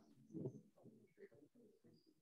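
Near silence, with a faint low murmur of a voice, slightly louder about half a second in.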